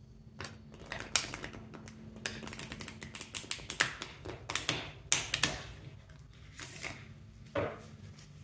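A tarot deck being shuffled by hand, its two halves pushed into each other: rapid, irregular flurries of crisp card clicks, densest in the middle and again about five seconds in.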